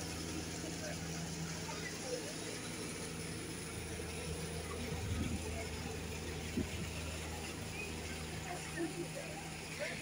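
A steady low machinery hum from the moored vessel's onboard plant, running evenly throughout, with faint voices in the background.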